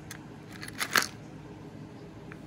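Costume jewelry being handled on a tray: a few light clicks and clinks of metal pieces touching, the loudest about a second in.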